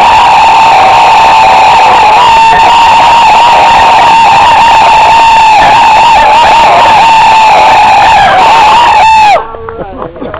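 A body of Confederate reenactors giving a long, loud, high-pitched rebel yell as they make a bayonet charge. The wavering yell is held for about nine seconds and then breaks off suddenly.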